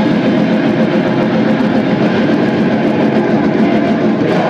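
Black metal band playing live: distorted guitars and drums blur into a loud, dense, unbroken wall of sound.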